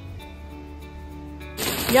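Soft background music with sustained notes; about one and a half seconds in it cuts off suddenly to the loud, even hiss of heavy rain pouring on a street, with a voice starting right at the end.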